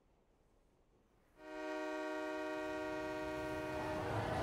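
A train whistle sounding one long, steady blast that starts about a second and a half in, after near silence.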